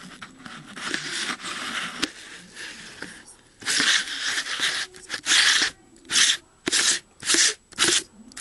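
Hands gripping and twisting a fisheye lens attachment onto a camcorder's lens, right against its built-in microphone: rubbing and scraping handling noise. In the second half it becomes a run of short, loud scraping strokes about two a second.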